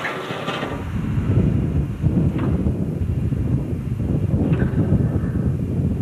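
Railcar rolling past close to the microphone: a dense low rumble that builds in about a second in and holds steady, with a couple of brief faint higher squeals.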